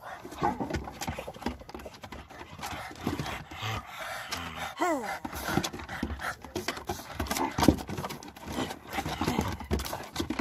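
Pugs panting and scuffling while they play on a wooden deck, their claws clicking on the boards. About five seconds in there is a short squeal that falls steeply in pitch.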